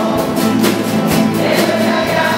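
A group of acoustic guitars strumming a song together in a steady rhythm, with voices singing along as a group.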